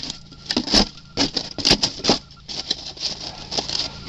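Hands handling the parts of a wooden beehive box: irregular light taps, scrapes and rustles of fingers and loose debris on the box's white inner board.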